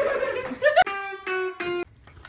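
People laughing and talking, then three short held musical notes of about the same pitch, each starting sharply, cut off abruptly near the end.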